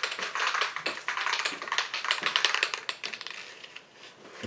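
Aerosol spray paint can being shaken, its mixing ball rattling in quick, irregular clicks that thin out near the end.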